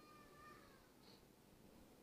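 Near silence: faint room tone, with one faint high, wavering call that slides down in pitch during the first half second.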